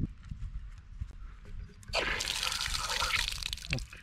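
Outdoor park drinking-fountain tap being opened by hand: a few faint clicks, then about halfway through water starts running and splashing steadily.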